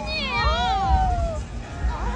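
A woman's high-pitched, wavering squeal of excitement, like a fan overwhelmed at meeting someone, over the babble of a crowded hall.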